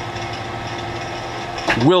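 Hardinge DSMA automatic turret lathe running, a steady machine hum with several held tones, as a tool relieves the hole in a 1018 steel bolt. A man's voice comes in near the end.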